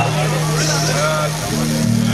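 Live crossover thrash band playing loud, heavily distorted guitar and bass with drums and shouted vocals. The held low riff note shifts up a step about three-quarters of the way through.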